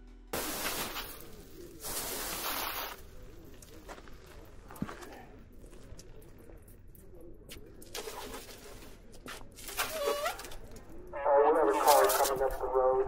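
Two hissing bursts of spray from a hand-held pressurised canister sprayer, each about a second long, then a quieter spell with faint outdoor background.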